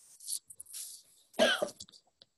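A person coughs once, short and loud, about a second and a half in, after a few soft breaths.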